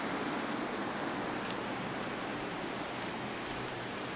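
Steady rushing hiss of background noise at a moderate level, with a faint click about a second and a half in.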